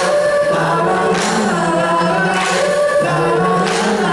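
A rock band playing live, with held sung notes over guitar and drums and a crash coming about every second and a quarter.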